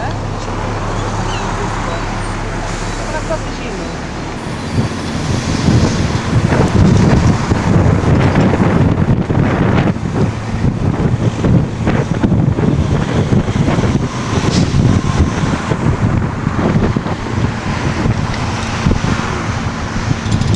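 Wind buffeting the microphone over a vehicle's low engine hum and street traffic, recorded from a moving vehicle. The buffeting becomes much louder and gustier about four seconds in.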